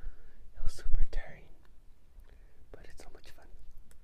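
A man whispering softly in two short stretches, about a second in and about three seconds in, with a quieter gap between.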